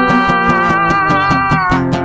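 Steel-string acoustic guitar played with quick, even strokes, with long held notes sounding over it.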